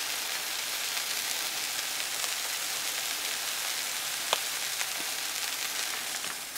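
Smashed beef burger patties and fajita peppers and onions sizzling on a hot Blackstone flat-top griddle, a steady frying hiss. A single light tick about four seconds in.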